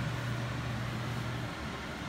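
A steady low electrical hum over an even background noise; the hum cuts off about a second and a half in.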